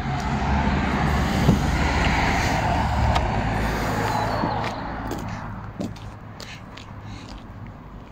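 A motor vehicle passing by, its engine and tyre noise building over the first couple of seconds and fading away after about five seconds, with a few light clicks along the way.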